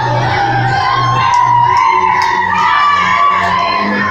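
Loud dance music with a steady bass beat about two a second and a wavering melody line, with the voices of a dancing crowd mixed in.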